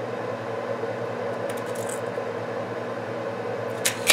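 A steady low electrical hum, like a fan or shop appliance, with a brief faint scratch of a pencil marking the wood about one and a half seconds in and a sharp click just before the end.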